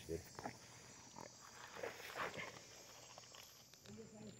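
Faint, steady high-pitched drone of night insects, with a short spoken word at the start and a few quiet voices.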